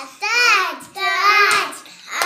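Young children's high-pitched voices in a sing-song chant: two drawn-out calls in a row, each rising and falling in pitch.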